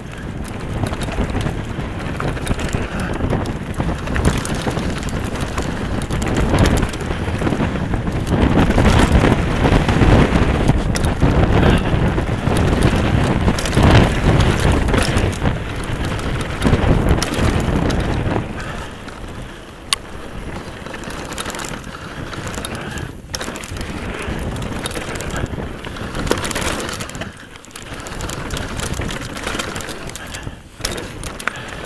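Wind buffeting a chest-mounted camera's microphone as a Nukeproof Scalp downhill mountain bike descends a rocky gravel trail at speed, the tyres and frame rattling over the stones. Loudest through the middle stretch, easing off after about eighteen seconds.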